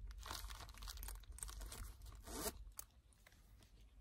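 Faint rustling and crinkling of a small nylon pouch and handbag being handled, busiest in the first two and a half seconds and then quieter.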